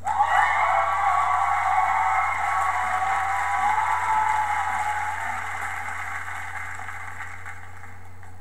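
Crowd cheering and screaming, loud at once and slowly fading over several seconds.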